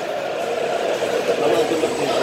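Indistinct chatter of many people in a large, busy room, a steady hum of voices with no single speaker standing out.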